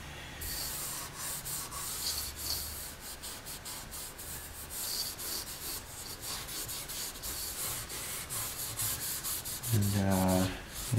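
A cloth rag dampened with naphtha rubbed back and forth over a stained quilted maple guitar top in quick, uneven strokes. It is a wipe-down that shows how dark the black stain has taken in the grain.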